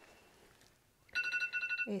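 A bell-like alarm ringing in a rapid trill of high tones, starting about a second in. It is the bell that signals ten minutes left of the class.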